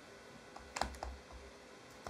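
A few faint, short taps of a rubber stamp being inked and pressed onto the paper pages of a prop passport booklet, four within about a second, the second one the loudest.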